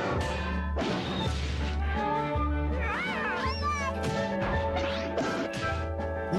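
Cartoon soundtrack: orchestral music under crashing impact effects, with a high, wavering cry about three seconds in.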